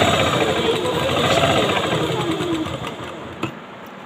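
Sewing machine stitching at speed, a fast continuous needle rattle whose pitch wavers up and down, then slowing and dying away about three seconds in.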